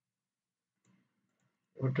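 Near silence with one faint short click about a second in, then a man's voice begins near the end.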